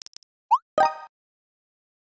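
Phone text-message sound effects: a few faint keyboard taps, then a quick rising swoosh as the message is sent about half a second in, followed straight away by a short bright chime.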